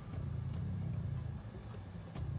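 A low, uneven rumble, with a few faint clicks of a computer mouse over it.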